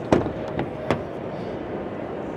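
Two sharp clicks, one just after the start and one about a second in, from the 2024 Kia Sorento's rear door handle and latch as the rear door is opened. They sit over a steady background hum.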